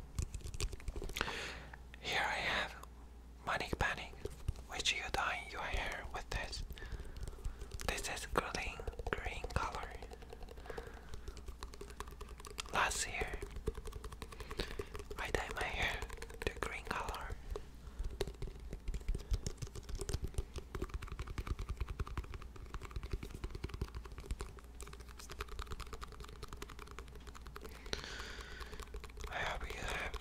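Fast fingertip and fingernail tapping on small hand-held containers close to the microphone: a quick, continuous patter of light clicks, with louder scratchy or whispered patches now and then.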